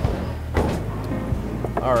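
Background music with a steady low bass line. A few soft knocks come from a cardboard shoebox lid being lifted off and handled.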